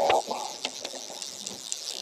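River current running and lapping around a drift boat, with a few faint clicks.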